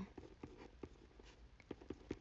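Faint, irregular light clicks and taps close to the microphone, about half a dozen spread unevenly over two seconds, with near silence between them.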